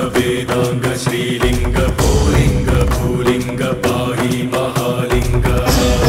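Hindu devotional music: chanting over steady held tones, with frequent drum strokes.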